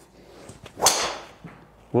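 Golf driver swung at full speed, clubhead at about 103 mph, striking a teed golf ball: one sharp strike about a second in.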